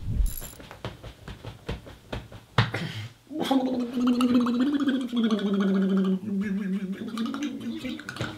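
Clicks, knocks and rustling during the first three seconds as a man moves about and settles into a desk chair. Then, from about three and a half seconds in, a long wordless vocal noise from the man as he stretches, held for over four seconds and dropping lower in pitch partway through.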